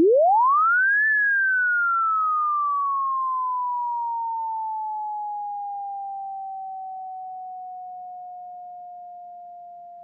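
ES2 software synthesizer holding one note, a pure tone whose pitch is swept by an envelope. It glides up quickly for about a second, then slides slowly back down and settles at the sustain pitch, fading gradually as it is held.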